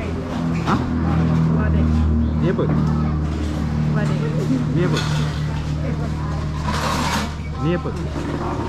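A steady, low engine hum, as from a motor vehicle running nearby, under background voices. A brief hiss comes about seven seconds in.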